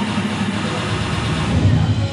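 A loud low rumble from the dance routine's soundtrack over the hall's loudspeakers, swelling near the end and then cutting off.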